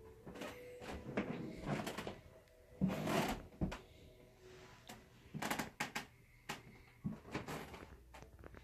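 Irregular knocks and clunks in a small room, several short ones spread over the seconds, the loudest about three seconds in.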